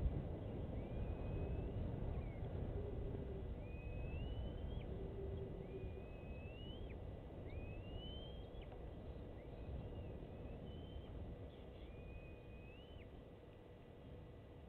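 A bird calling again and again: rising whistles, each about a second long and ending in a sharp drop, every one and a half to two seconds, over a steady low outdoor rumble.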